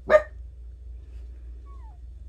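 A dog barks once, short and loud, just after the start; a faint, brief falling whine follows near the end.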